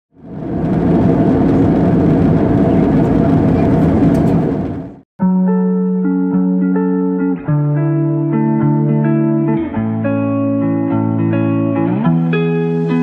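A loud, steady rushing noise that cuts off suddenly about five seconds in, followed by instrumental background music with held notes.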